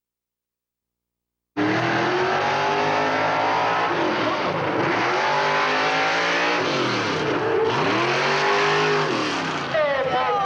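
Silent for about the first second and a half, then a racing motorized fire truck's engine cuts in loudly, its pitch sweeping up and down again and again as it revs.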